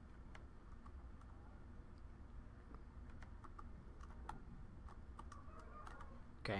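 Faint, irregular clicking from a computer keyboard and mouse over a low steady hum.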